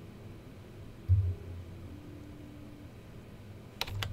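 Steady low room hum, with a dull low thump about a second in and a short, sharp click just before the end.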